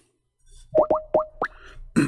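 Four quick rising electronic 'bloop' tones from a calling app, heard as an outgoing call to a caller is placed and starts ringing.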